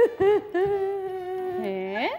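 A woman's voice holding one long, steady humming note, with a lower note joining near the end and the pitch then sliding up.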